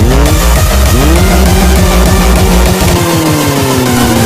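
An engine revving up twice in quick succession, then holding high revs and easing down slightly near the end. It plays over loud music with a heavy beat.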